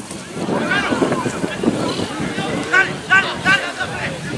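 Overlapping shouts and calls from rugby players and spectators during open play, with three short, sharp shouts in quick succession near the end, over wind on the microphone.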